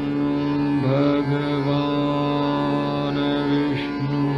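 Hindustani classical vocal music in raga Marwa, slow vilambit tempo. A male voice holds long notes, with a sliding rise in pitch about a second in and another near the end, over a steady drone and sustained accompaniment.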